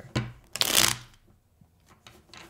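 Tarot cards shuffled by hand: a short click, then one brief rustling riffle of the deck about half a second in, after which the cards go quiet.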